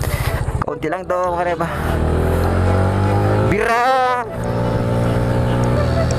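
Yamaha NMAX 155's single-cylinder four-stroke engine running through an aftermarket RS8 exhaust at a steady cruise, heard over the rush of riding. A voice cuts in briefly about a second in and again around four seconds in.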